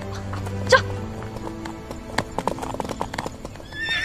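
Horses' hooves clopping in a steady train of hoofbeats from about halfway through, with a horse whinnying near the end.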